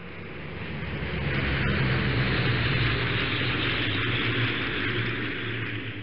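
Single-engine floatplane's engine and propeller running at high power, heard from inside the cockpit during the takeoff run: a steady low engine drone under a broad rush of noise. It swells up over the first two seconds and fades down near the end.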